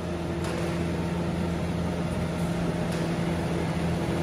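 Electric roller shutter door rolling up, its motor running with a steady hum that starts just after the beginning and stops right at the end, over a low steady drone.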